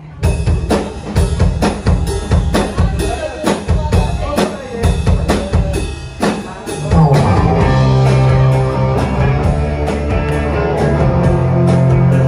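A rock band starts a song with a drum kit beat of snare and bass drum hits; about seven seconds in, bass and guitar come in with held notes over the drums.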